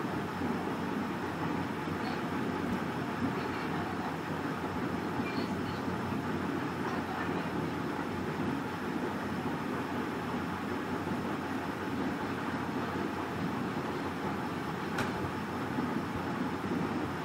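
Steady background noise with no speech, a constant rumble and hiss that does not change. A single faint click comes about a second before the end.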